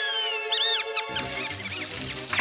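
Cartoon mice squeaking in fright: the tail of a high cry gliding down, then a few quick rising-and-falling squeaks, with cartoon background music coming in about a second in.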